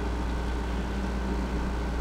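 A steady low background hum with a faint hiss, unchanging throughout, with no distinct events.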